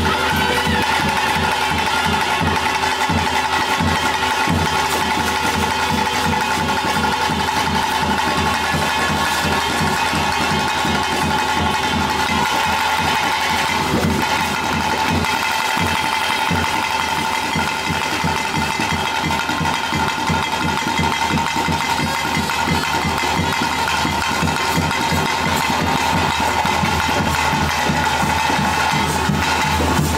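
Traditional ritual music for a Tulu bhuta kola: a wind instrument holds a steady, drone-like high note over fast, continuous drumming.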